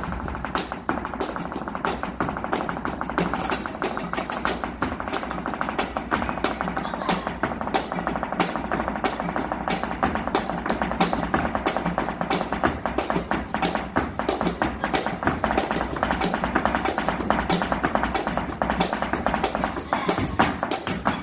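Flamenco dancer's footwork: rapid, continuous heel and toe strikes on the stage, played over flamenco guitar.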